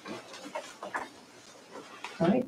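Faint, breathy chuckling and small handling knocks, picked up by the podium microphone.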